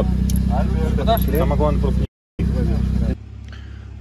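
A steady low engine hum runs under men talking. It cuts out briefly about two seconds in, and a little after three seconds it gives way to a much quieter background.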